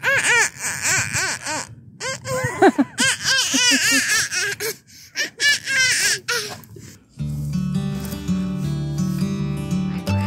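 A toddler laughing in repeated rising-and-falling bursts of giggles. About seven seconds in, the laughter gives way to background music made of steady, held tones.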